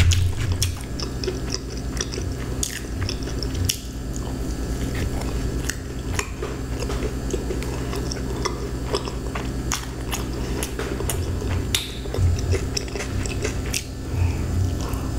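Close-miked chewing and biting of thick-crust pizza: wet mouth sounds and crust crunching, with many small sharp clicks throughout, over a low steady hum.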